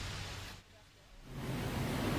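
Steady outdoor background noise that drops away almost to silence for about a second in the middle, then comes back with a low rumble.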